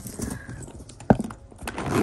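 A small brass Louis Vuitton padlock and its key being handled at the bag's zipper pulls: light rustling and small metal clinks, with one sharp click about halfway through.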